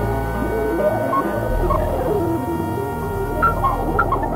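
Electronic music: layered held synthesizer tones over a low drone, with wavering, gliding pitches in the middle; a high held tone steps down in pitch about a second and a half in.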